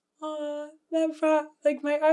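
A woman's voice speaking in three drawn-out, steady-pitched stretches, the first starting a fraction of a second in.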